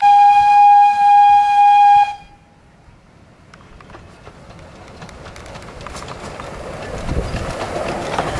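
Fairbourne Railway miniature steam locomotive blowing its whistle in one steady, loud blast about two seconds long. Then the train is heard coming closer, its running noise with clicks of the wheels over the rail joints growing steadily louder.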